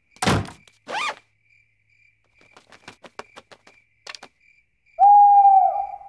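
A cartoon night-time soundscape. A thunk at the very start, then faint high chirping in short dashes with a few small clicks, and near the end an owl hooting once, a steady hoot about a second long.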